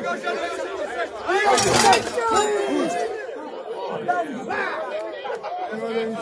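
Crowd of spectators shouting and talking over one another, urging on a pulling horse, with a louder burst of shouts about a second and a half in.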